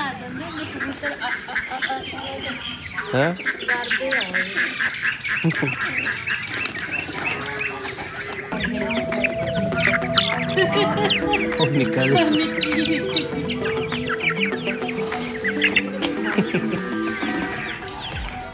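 A flock of hens clucking and calling as they crowd around feed held out by hand. Background music comes in about halfway and runs under the clucking.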